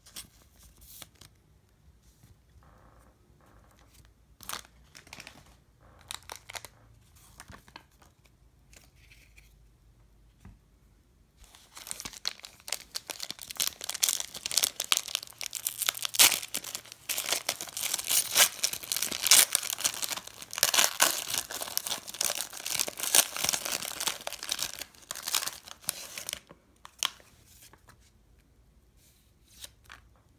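A foil Pokémon VS booster pack crinkling and tearing as it is opened by hand. A long, dense crackling starts about twelve seconds in and lasts around fifteen seconds, with only faint handling clicks before and after.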